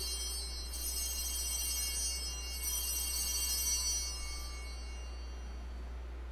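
Altar bells, a cluster of small high-pitched hand bells, rung at the elevation of the consecrated host. They are shaken again about a second in and once more a little later, and the ringing dies away about five seconds in.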